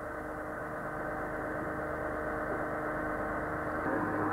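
Semi-submersible's six-cylinder Perkins diesel engine and hydraulic pumps running steadily: a low drone with a pitched hum, slowly growing louder.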